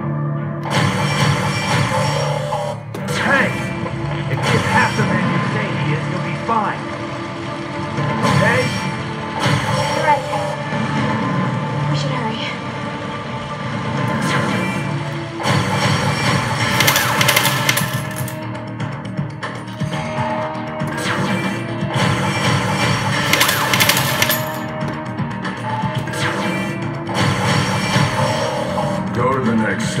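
Resident Evil 6 pachislot machine sounding through its speakers during a bonus mode: game music with gunfire sound effects and snatches of voice, with louder bursts of noise about two-thirds of the way through and again a few seconds later.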